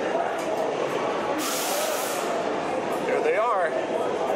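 Crowd chatter in a roller coaster loading station, with a short burst of pneumatic air hiss about a second and a half in, typical of the ride's air brakes or restraints venting. A brief wavering high call follows near the end.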